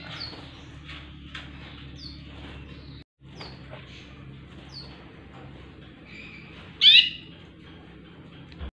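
Caged Yorkshire canaries giving short, high, falling chirps about once a second, with one louder sweeping call about seven seconds in.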